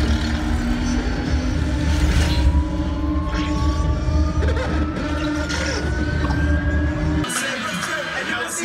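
A film soundtrack playing over cinema speakers, recorded from a seat in the theatre: a deep, steady bass rumble under held tones, with one tone slowly rising in pitch. The rumble cuts off abruptly about seven seconds in.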